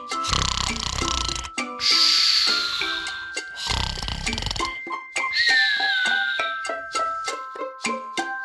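Cartoon snoring over light children's music: two low rattling snores, each followed by a high whistle that falls in pitch. In the second half the music carries on with quick plucked notes.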